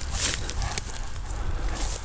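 Steady low rumble from handling on a hand-held camera's microphone, with faint scattered crackles and rustles of dry leaf litter.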